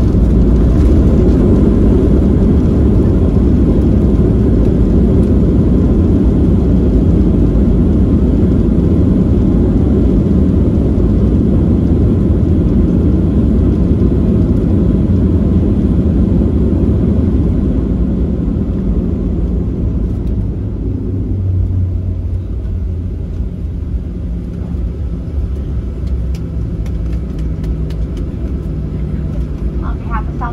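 Cabin noise in a Boeing 737-800 rolling out after landing: a loud, steady rumble of the engines and the wheels on the runway. It eases off about two-thirds of the way through as the plane slows, leaving a quieter taxiing hum.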